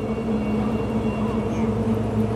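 A large engine running steadily with a constant, even hum.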